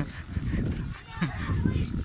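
Wind buffeting a phone's microphone, a steady low rumble with gusty thumps, and a faint voice briefly in the middle.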